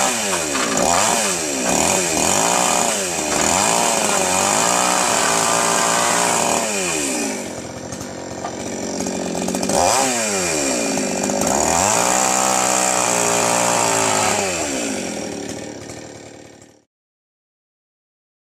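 Two-stroke chainsaw revving in quick blips, then held at high revs through two long cuts into wooden planks, dropping back toward idle between them. It fades out and stops near the end.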